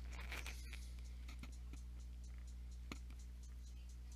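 Quiet, steady low electrical hum with a few faint, scattered clicks.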